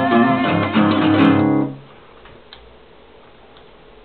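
Acoustic guitar strummed through the closing chords of a song, then the strings stop sharply about one and a half seconds in, leaving only faint hiss and a single soft click.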